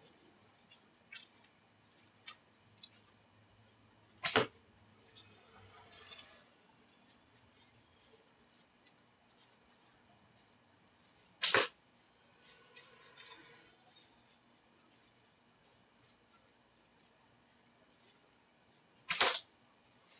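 A PVC pipe bow with a centershot handle and a velcro arrow pass being shot three times, about seven seconds apart. Each release is a sharp snap with a quick double crack. A few faint clicks come before the first shot.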